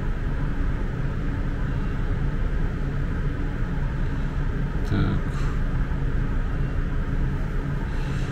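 Steady low background rumble, with a brief faint sound about five seconds in.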